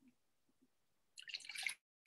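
Water poured from a plastic water bottle into a stainless steel electric kettle: a faint, brief splashing that starts about a second in.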